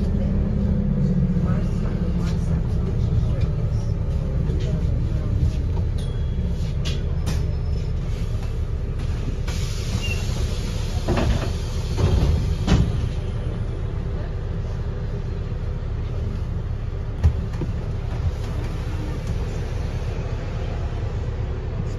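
Interior running noise of a New Routemaster hybrid double-decker bus heard from the upper deck: a steady low drone from the driveline and road, with a pitched hum sliding down in the first few seconds. A brief hiss with a few knocks and rattles comes near the middle.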